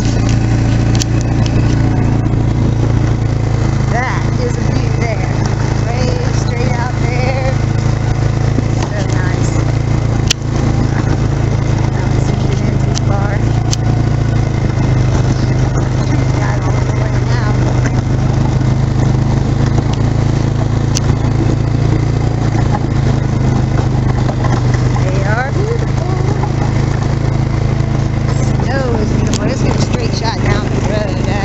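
A 2012 Polaris Sportsman 500 ATV's single-cylinder four-stroke engine running steadily under way: a constant low drone whose tone shifts slightly about halfway through.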